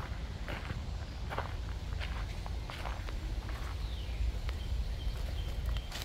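Footsteps at a steady walking pace over a constant low rumble. A bird's falling whistle comes about four seconds in and a thin held note near the end.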